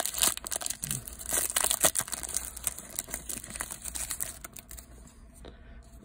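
Foil trading-card pack wrapper crinkling and tearing as it is pulled open by hand: dense crackling for the first two or three seconds, then sparser and fainter rustling.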